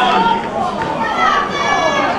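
Several voices of players and spectators shouting and calling over one another, with a steady high-pitched sound held for about half a second near the end.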